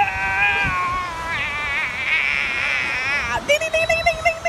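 A child's long, high-pitched drawn-out vocal cry, held for over three seconds and wavering in pitch in its second half. It breaks off near the end, and a second long held cry begins straight after.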